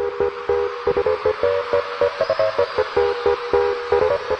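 Fast electronic bounce dance music: a steady, quick beat under a chopped, stuttering synth chord.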